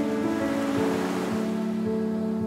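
Soft background music of sustained, slowly changing chords, with an ocean wave breaking: a rush of surf swells about half a second in and fades away before the end.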